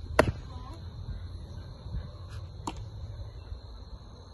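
A baseball landing in a leather glove with a sharp pop just after the start, and a fainter pop about two and a half seconds later, over a steady high hum.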